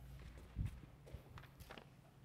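Faint footsteps of a person walking a few paces, with a heavier thump just over half a second in.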